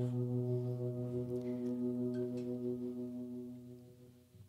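The last chord of an acoustic guitar ringing out, one steady chord slowly dying away over about four seconds.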